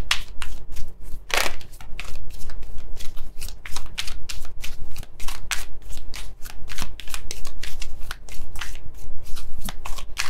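A deck of oracle cards being shuffled by hand: a rapid, irregular run of crisp card flicks and riffles, with one longer, louder swish about a second and a half in.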